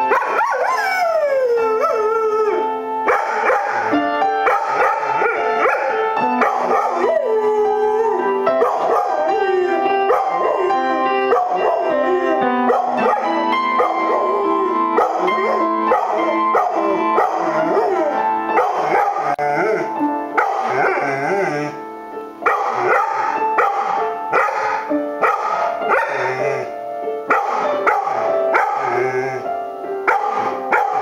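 A dog howling along to piano playing, its drawn-out howls gliding up and down in pitch over the piano notes. One howl in the first couple of seconds slides steadily downward.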